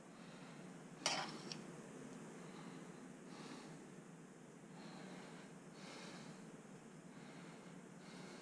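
Faint sounds of a metal spoon spreading and scooping sticky sushi rice, with one sharp clink about a second in, and a person's breathing close to the microphone.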